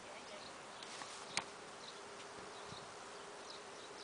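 A handheld umbrella snapping open, a single sharp click about a second and a half in. Through it runs the thin, steady hum of a buzzing insect.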